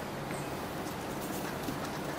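Faint light ticks of a stylus tip tapping and scratching on a writing tablet as letters are written, over a steady low room hum.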